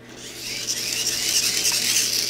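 Small hand-crank dynamo whirring as its crank is turned by hand, growing louder over the first half second.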